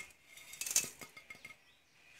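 Faint clinks and taps of the last lumps of crushed sugar loaf dropping from a bowl into a stainless steel pot, a few in the first second, dying away by halfway through.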